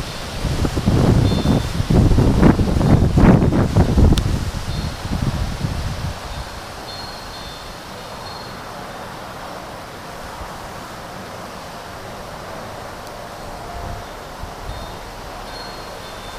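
Wind buffeting the microphone in loud, low gusts for the first six seconds or so, then settling to a steady outdoor hiss. Faint, high ringing tones come and go several times.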